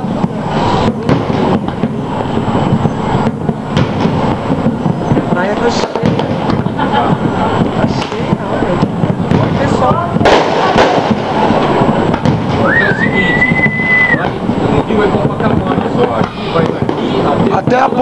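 Fireworks going off in a continuous series of bangs, over a steady din of voices. About thirteen seconds in, a high whistle rises and holds for just over a second.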